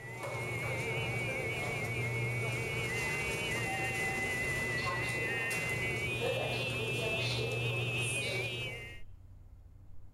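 Overtone singing by a male voice: a steady low drone with a high, whistle-like overtone melody above it that wavers and steps between notes and climbs higher in the second half, stopping about nine seconds in.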